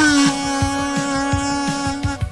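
Kazoo playing one long held note, rich and buzzy, after a short upward slide into it, over a steady drum-machine beat. The note stops near the end.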